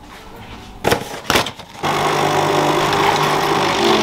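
Two knocks, then a small electric appliance switches on and runs with a steady hum and hiss. It cuts off abruptly at the end.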